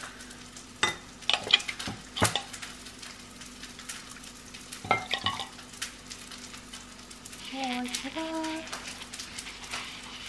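A metal ladle scraping and clinking against a ceramic bowl and a stainless-steel food jar as soup is scooped and poured into the jar, with liquid slopping. The clinks come in small clusters early on and again about halfway.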